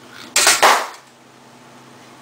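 A small rubber balloon bursting with a loud pop a little way in, the burst lasting about half a second. It is punctured by two wedges on a lever pushed down by a falling bucket, the last step of a K'NEX simple-machine contraption.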